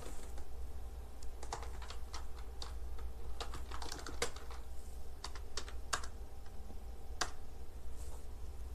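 Typing on a computer keyboard: irregular keystrokes, some in quick runs, over a steady low hum.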